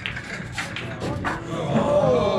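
Sharp click of the cue ball striking the black object ball, followed by a few lighter ball clicks. Near the end, spectators break into a drawn-out groan as the object ball stops at the lip of the corner pocket.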